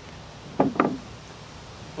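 Two short knocks about half a second in, a quarter second apart, as objects are handled at the engine block.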